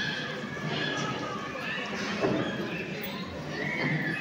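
Several voices of the gathering, with high, drawn-out vocal calls that rise and fall in pitch, about a second in and again near the end.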